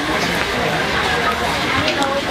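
Background crowd chatter: many voices talking at once, steady and indistinct.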